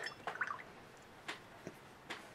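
Quiet desk sounds with a couple of faint, short clicks past the middle, as a paintbrush is dabbed into a plastic palette's well of wet paint.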